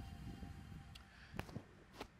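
Faint handling of a textile riding jacket: its front zipper being undone and the fabric rustling, with two small clicks a little after a second in.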